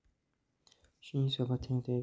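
Near silence for about a second, a few faint clicks, then a man's voice starting to speak.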